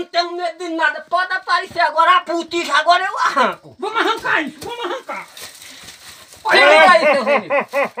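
Men's voices talking excitedly, with a louder shout near the end.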